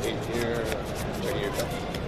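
Sleeved trading cards being shuffled by hand, a quick run of small clicks, over a background of many people talking.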